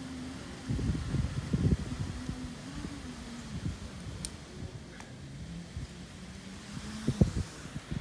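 Wind buffeting the microphone in uneven gusts, with a low wavering hum and a few faint clicks.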